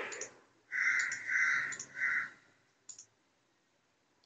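A crow cawing three times in quick succession, each call about half a second long. A faint click or two sounds around it.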